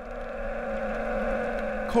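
A steady, even droning hum made of several held tones over a low rumble, unchanging throughout.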